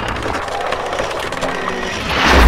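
Glitchy electronic sound effects of a channel logo sting: a dense buzzing, crackling noise with many rapid clicks, holding a steady level.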